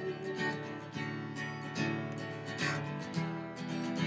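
Steel-string acoustic guitar strummed in a steady rhythm, chords ringing between strums.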